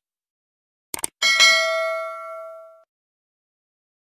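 Subscribe-button animation sound effect: two quick clicks, then a single bell ding that rings out and fades over about a second and a half.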